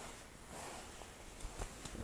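Faint rustling of a tractor cab's fabric tarp being handled and pressed into place by hand, with a few soft clicks near the end.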